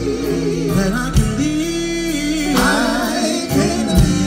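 A gospel vocal group singing live over amplified keys, bass and drums, with one long held note through the middle of the phrase and higher voices coming in after it.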